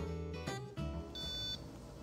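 Guitar music that stops within the first second, then a single short electronic beep about a second in, from an anesthesia patient monitor watching the anesthetised fox.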